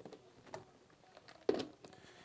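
Faint clicks and knocks of a blender jar being handled and set down onto its motor base, the loudest knock about one and a half seconds in.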